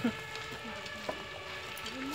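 A house fire crackling: a steady hiss of burning with small scattered pops.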